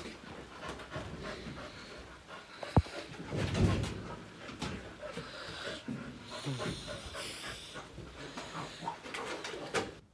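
Wet dog scrambling about and rolling on a wooden deck and a towel: scuffling and rubbing on the boards, with many small clicks and panting. A sharp knock about three seconds in.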